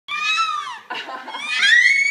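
Baby squealing with delight in high-pitched cries: a squeal that falls away in the first second, a short breathy sound, then a rising squeal held near the end.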